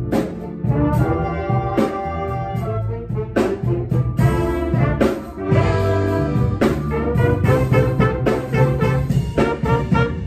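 School jazz band playing a slow ballad without voice: the brass section holding sustained chords over a drum kit's regular cymbal and drum strikes.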